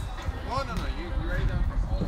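A person's voice, a short sound rising and falling in pitch about half a second in, over a steady low rumble.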